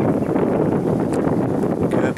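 Wind blowing across the microphone, a steady rush.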